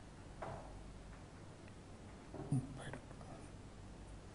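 Faint marker strokes on a whiteboard, with a soft murmur of voice and a short low thump about two and a half seconds in.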